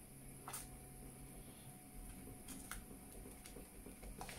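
Faint stirring of thick cheese sauce with a wooden spoon in a stainless steel saucepan, with a few light clicks of the spoon against the pan.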